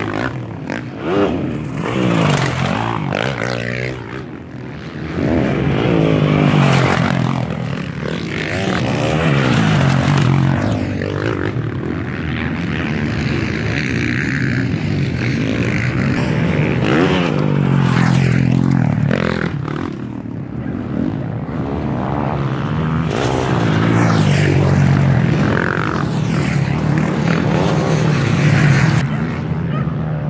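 MX1-class motocross bike engines revving around the dirt track, the pitch climbing and falling again and again, with more than one engine overlapping at times.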